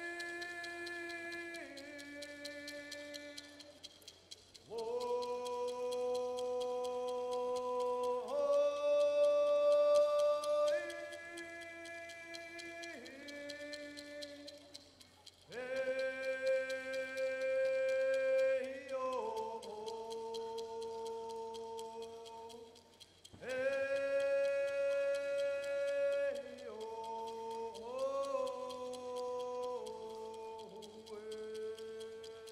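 A young man singing a gift-receiving song solo in long held notes, in phrases of several seconds with short pauses for breath between.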